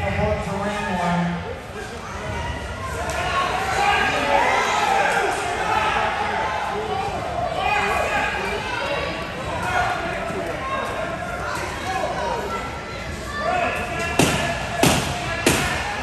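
Several people talking at once, echoing in a large gym hall, with three sharp knocks in quick succession near the end.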